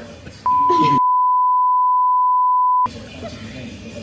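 A steady, high, pure censor bleep lasting about two and a half seconds, laid over the speech so that all other sound drops out while it plays; it cuts off sharply.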